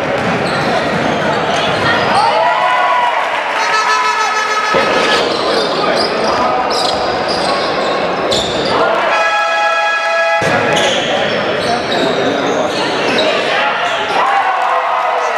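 Live basketball game sound in a sports hall: the ball dribbling and bouncing, short high squeaks of sneakers on the hardwood, and voices from players and spectators. The sound changes abruptly several times where separate plays are cut together.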